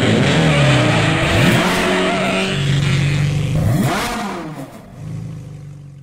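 Car engine revving hard, its pitch rising and falling, with a loud rushing noise of tyres spinning in a burnout. The noise eases off about four seconds in, leaving a lower steady engine note that fades out near the end.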